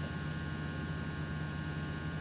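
Steady low electrical hum with a faint hiss underneath.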